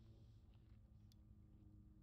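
Faint, steady drone of a radio-controlled aerobatic model airplane's motor and propeller, heard from afar, with a few faint clicks.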